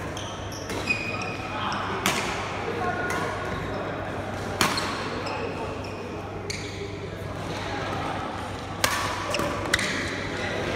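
Badminton rackets striking shuttlecocks: five sharp pops scattered through, two close together near the end, over background chatter in a large sports hall.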